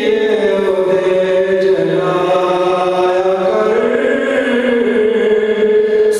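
A man's solo voice chanting a religious recitation, held in long notes that glide slowly up and down, with no instruments.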